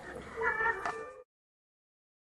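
A short pitched vocal sound about half a second in, over faint room noise. The audio then cuts off abruptly to dead silence a little past a second in.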